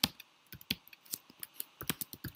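Computer keyboard typing: a run of uneven, separate key clicks.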